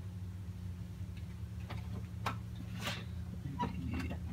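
Steady low hum with a few faint clicks and taps about half a second apart as an office laser printer is handled.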